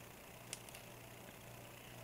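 Near silence: room tone with a faint steady low hum and one soft click about half a second in.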